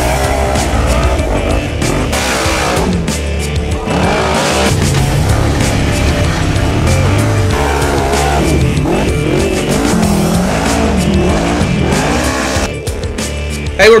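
Off-road racing engines revving hard under load as a UTV and a rock bouncer buggy claw up a steep, rocky dirt hill, with a music track mixed in. The sound drops away shortly before the end.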